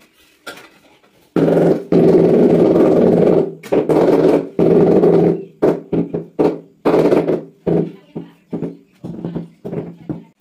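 Ceramic floor tile being bedded in mortar: a few seconds of continuous rubbing as the tile is worked into place, then a run of knocks, about three a second, as it is tapped down with a rubber mallet, ringing in the small tiled room.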